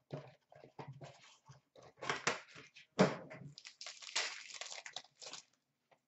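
Paper and foil rustling as a trading-card pack is torn open and the cards are handled: a string of short, irregular crackles and scrapes that stops about half a second before the end.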